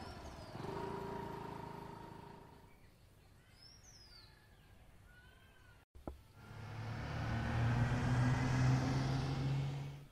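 A motorbike engine running and fading away over the first few seconds, followed by a few bird chirps. About six seconds in, a vehicle engine hum swells steadily louder and then cuts off suddenly at the end.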